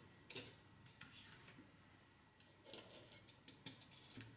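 Faint, scattered light clicks of small parts being handled as prop spacers are fitted onto quadcopter motor shafts, with a cluster of clicks in the last couple of seconds.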